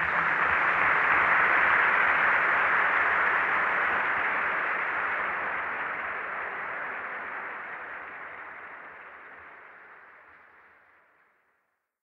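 Audience applause heard through an old, hissy 1936 radio broadcast recording. It swells for a second or two just after the orchestra stops, then fades steadily away to silence about eleven seconds in.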